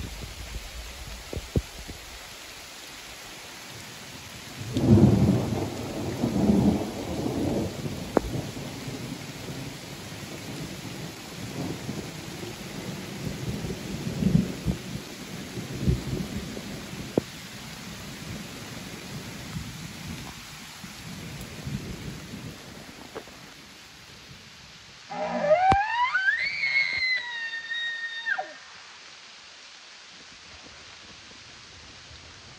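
An elk bugle near the end: a loud call that climbs steeply from low to a high whistle, holds it briefly, then breaks off, about three seconds long. Before it, a steady hiss with a few low rumbles.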